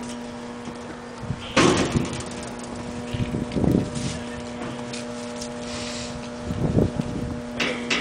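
Louvred sheet-metal access door of a Cummins generator enclosure being opened, with a loud clatter about one and a half seconds in and a couple of softer knocks later. A steady low hum runs underneath.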